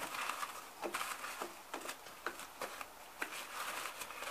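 Faint rustling and crinkling of a package's white wrapping as it is handled, with scattered soft ticks.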